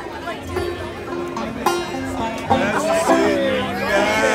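Banjo being picked, a run of single notes, with people talking over it.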